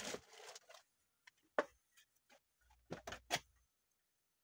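A plastic freezer bag of frozen blueberries rustles briefly as it is pushed into a wire freezer basket. Then come a single sharp click and, about a second and a half later, a quick run of short clicks and knocks from freezer doors and fittings being handled.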